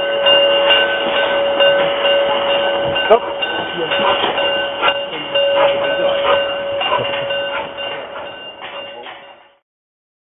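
Prussian P8 steam locomotive 38 3199 moving slowly along the track, with a steady high-pitched squeal over irregular knocks. The sound cuts off suddenly near the end.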